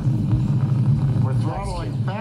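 Rocket-launch webcast audio played through a computer monitor: a steady, rough low rumble, with a voice coming in about a second and a half in.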